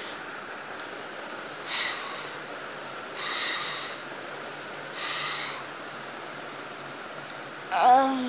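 Three soft, breathy hisses about a second and a half apart, a person making slow sleeping breaths for a doll lying asleep.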